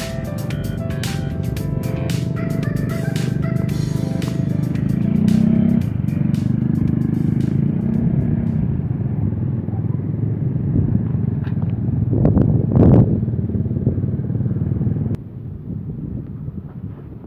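Background music fading out over the first few seconds, giving way to the steady low running of a CC 203 diesel-electric locomotive's engine. The sound swells briefly about thirteen seconds in, then drops suddenly.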